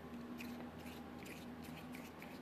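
Faint scattered small clicks over a steady low hum.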